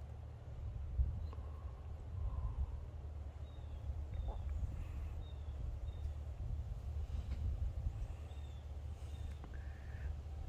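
Outdoor wind rumbling on the microphone, with a bird giving faint short high chirps, a run of them around the middle and two more near the end. There is a single knock about a second in.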